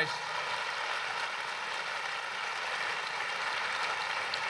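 Steady, even rushing noise with no voice in it, the sound of an audience applauding a speaker at a podium in a recorded speech.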